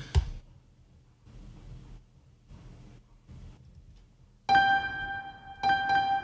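A simple melody on FL Keys, FL Studio's sampled piano, played back through the 2C Audio B2 reverb plugin. It comes in about four and a half seconds in, with a fresh chord about a second later, after a few quiet seconds.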